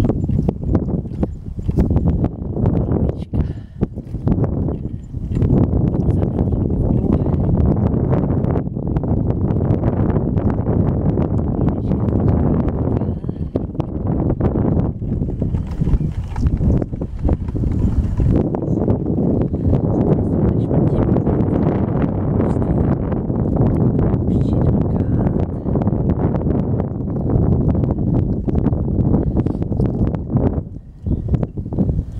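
Strong wind buffeting the camera microphone: a loud, low rumble that comes in gusts over the first few seconds and then runs steadily.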